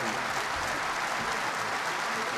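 Concert-hall audience applauding steadily, a dense even clapping after the orchestra has finished the song.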